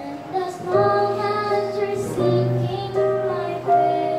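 A young girl singing a hymn-like melody into a handheld microphone over instrumental accompaniment, her notes held and gliding between phrases.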